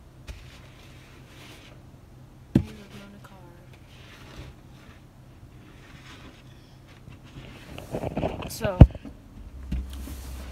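Snow brush sweeping snow off a car windshield, heard from inside the car as soft repeated scrapes across the glass, with one sharp knock on the glass about two and a half seconds in. A low steady hum runs underneath.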